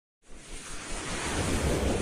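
A whoosh sound effect for an animated logo intro: rushing noise with a low rumble underneath, starting from silence just after the start and swelling steadily louder.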